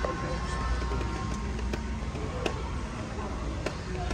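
Busy shop floor ambience: a steady low rumble with faint, indistinct voices in the background and a few light clicks.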